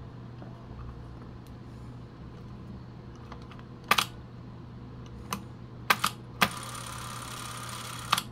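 Several small sharp clicks, then a Fujica ZXM 500 Sound Single-8 movie camera's drive motor runs with a steady whir for about a second and a half near the end. The shutter button has just been pressed to test whether the camera advances a Single-8 test cartridge.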